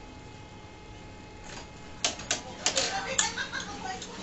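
Quiet room hiss, then from about halfway a quick run of sharp clicks and knocks, with a muffled voice among them.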